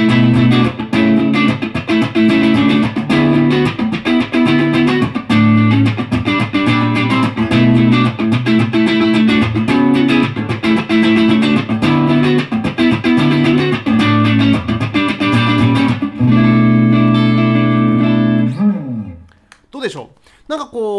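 Electric guitar (a Bill Lawrence BL1) played through a Beyond Tube Pre Amp tube preamp pedal switched on, into a Blackstar Studio 10 6L6 valve combo amp: a rhythmic chord riff with a thick, fat tone. Near the end a chord is held for a couple of seconds, then dies away.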